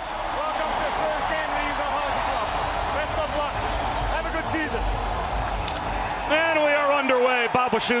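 Hockey arena crowd noise: a dense wash of many voices cheering and chattering. Near the end a single commentator's voice comes up over it, along with a few sharp knocks.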